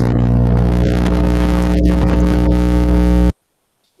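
A loud, steady, low-pitched buzz that holds one pitch and cuts off suddenly about three seconds in.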